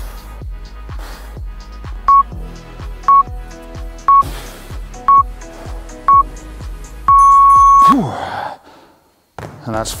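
Workout interval timer counting down: five short beeps a second apart, then one long beep marking the end of the exercise interval. These play over background music with a steady beat, which fades out after the long beep.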